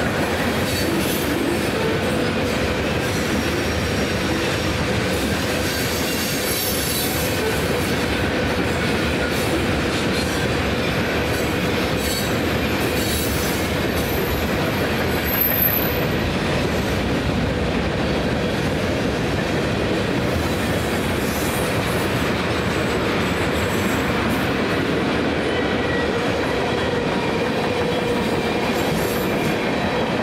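Freight cars of a long train rolling past: a steady rumble of steel wheels on rail with a thin steady whine running under it, and a short high squeal about halfway through.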